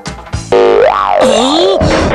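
Cartoon sound effect over background music: a loud pitched sound starting about half a second in, its pitch sweeping up, then down, then wobbling.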